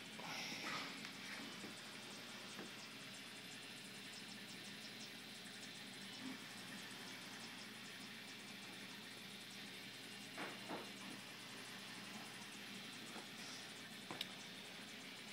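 Faint steady hiss with a low hum from a running aquarium's water and pump, with a few faint brief noises about half a second in and again about ten seconds in.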